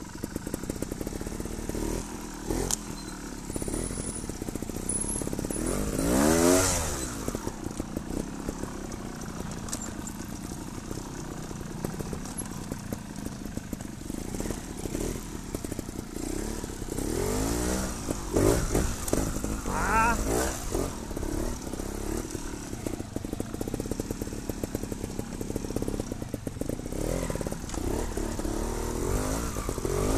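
Trials motorcycle engine running under a rider's throttle over rough ground, revving up and dropping back again and again. The loudest burst of revs comes about six seconds in, with a cluster of quick blips a little past the middle and another near the end.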